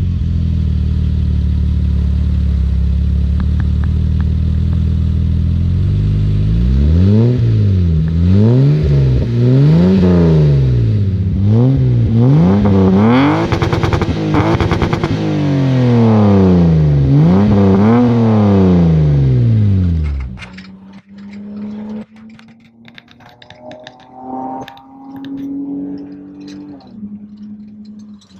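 BMW E30 325i's straight-six engine heard at the tailpipe through its single 2.5-inch exhaust and Vibrant muffler: steady idle, then from about six seconds in it is revved about six times, each rev climbing and falling back. The loud sound stops abruptly near twenty seconds, and a much quieter, varying engine sound follows.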